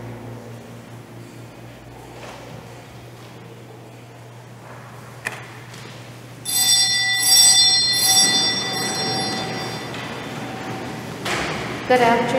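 A small multi-toned bell rung several times in quick succession past the middle, then ringing away in the church's reverberation: the sacristy bell that signals the start of Mass. Before it, quiet room tone with a steady low hum.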